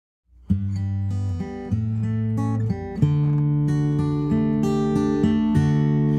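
Acoustic guitar playing a picked instrumental intro, starting about half a second in: bass notes under ringing chord tones, a few notes a second.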